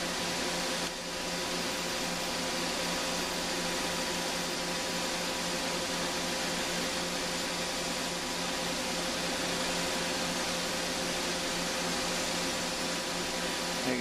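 Cessna Citation X's tail-mounted APU running with its bleed air blowing into the cockpit: a steady rush of air with faint steady tones through it.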